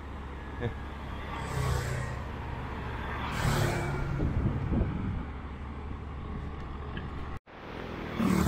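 Light road traffic with motorcycles passing close by, rising and falling twice as they go past over a steady low rumble. The sound drops out for an instant near the end at an edit cut.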